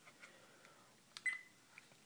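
A faint click and a short, high single beep from the Mobile-i F1000 car camera about a second in: its key tone as the menu button is pressed, opening the settings menu. A few faint handling ticks sit around it.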